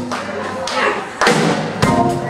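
Live jazz combo playing, led by the drum kit, with loud drum hits about a second in and again near the end.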